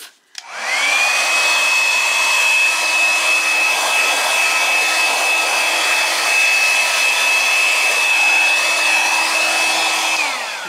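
Handheld blow dryer switched on about half a second in, its motor spinning up to a steady high whine over a rush of air. It is switched off near the end, the whine falling as the motor winds down.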